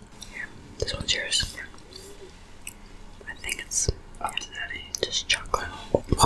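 Close-miked chewing of donut, with many small sharp mouth clicks, and soft whispering at a few points.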